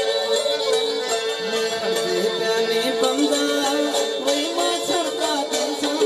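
Live Saraiki folk music: one steady held drone note under a wandering melody line, with regular hand-drum strokes.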